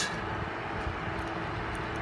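Steady background noise with a faint low hum underneath, and no distinct events.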